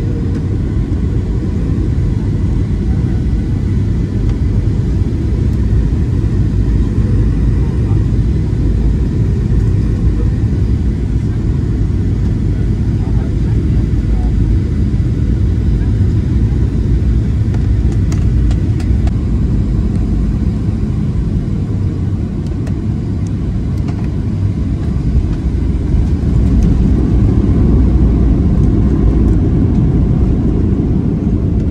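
Steady low rumble of a Ryanair Boeing 737's jet engines and airflow heard inside the cabin on final approach. It grows louder in the last few seconds as the plane reaches the runway.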